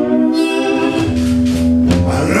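Live acoustic blues: a steel-string acoustic guitar played with a man singing, the voice holding a long note over the guitar.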